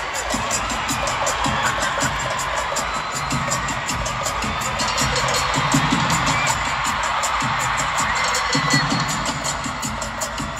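Live pop band music played loud through an arena PA, with a steady beat, and a large crowd cheering along.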